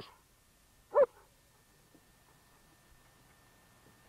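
A dog gives a single short bark about a second in, followed by faint background noise.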